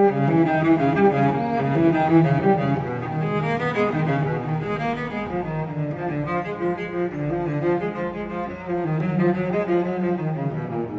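Classical chamber music for bowed strings, with a cello and double bass carrying a low moving line under higher string parts, played as a steady flow of notes.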